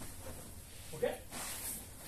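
Grappling sounds as two men in jiu-jitsu gis shift on the mats, with cloth rustling and a brief voice sound, a grunt or breath, about a second in.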